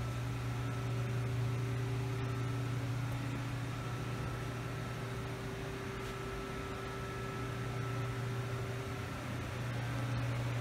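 Steady low hum of running machinery or ventilation, with a few faint steady whining tones above it; one of the middle tones fades out about nine seconds in.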